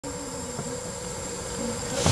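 A steady background hum with a faint, thin high whine running through it, rising slightly in level near the end.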